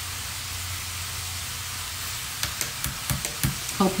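Steady sizzling hiss of food frying, with a few light clicks or pops in the second half.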